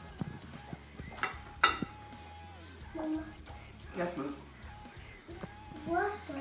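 Background music with two sharp clinks of a fork against a glass bowl about a second and a half in, and brief voice sounds around the middle.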